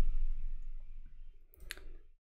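Two quick, sharp clicks of computer keyboard keys about one and a half seconds in, over a faint low hum.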